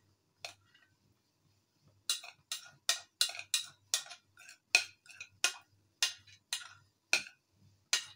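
A spoon scraping and knocking against the inside of a bowl in short, quick strokes, about two a second, as mashed potato (aloo bharta) is scooped out into a serving bowl.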